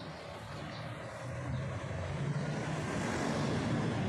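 Low engine rumble of a passing vehicle, growing steadily louder.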